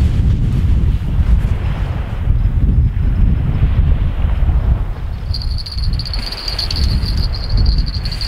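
Wind buffeting the microphone in a loud, uneven rumble. A faint, steady high-pitched ringing tone joins about five seconds in.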